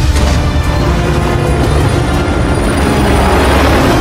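Film soundtrack: dramatic music over a steady low rumble of a hovering helicopter, the whole mix building up near the end.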